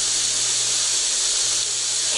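A steady, even hiss with a faint low hum beneath it, and no speech.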